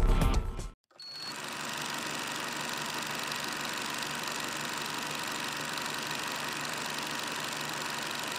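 A brief burst of intro music cuts off under a second in. It is followed by the steady running sound of a film projector, an even mechanical noise held at one level.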